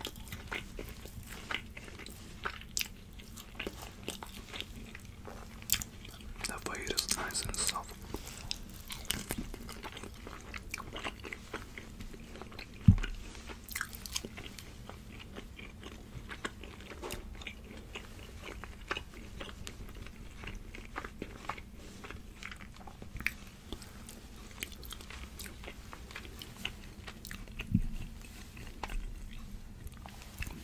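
Close-miked chewing and biting of grilled meat and sausage, with wet mouth clicks throughout. A dull thump about thirteen seconds in is the loudest sound, with a smaller one near the end.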